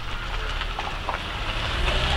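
Steady low rumble of outdoor background noise picked up by a handheld camera's built-in microphone, with a few faint clicks.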